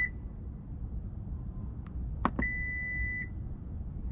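Toyota Highlander power liftgate's buzzer giving one steady high beep of almost a second, about two and a half seconds in, just after two light clicks. The beep confirms that the liftgate's opening height is being set while its button is held.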